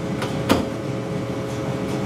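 Steady hum and hiss of room noise with a faint steady tone, and one sharp click about half a second in.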